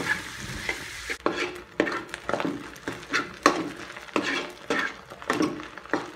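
A spatula scraping and stirring food around a sizzling wok, in repeated strokes about twice a second, over a steady sizzle of frying oil.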